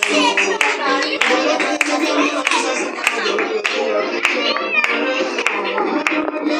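A group of people clapping hands together in a steady rhythm, about one and a half claps a second, over music and voices.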